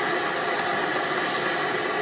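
Steady hiss and buzz of TV static from the speaker of a 1991 Sony Mega Watchman portable TV: the set has lost its signal and shows snow.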